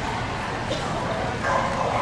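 A dog barking amid people's voices in a large echoing hall.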